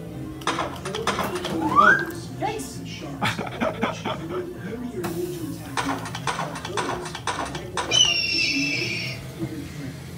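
Electronic shooting-gallery sound effects: a rapid string of sharp shot and hit sounds, a short rising whistle about two seconds in and a wavering high tone lasting about a second near the end, over a steady music track.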